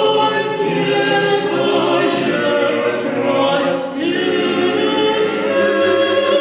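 Mixed choir of men and women singing sustained chords in several parts. A short hiss rises over the voices about three and a half seconds in.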